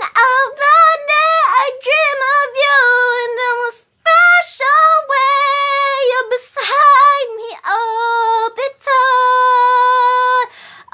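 A woman singing a slow love song unaccompanied, in sung phrases with a short break about four seconds in and a long held note near the end.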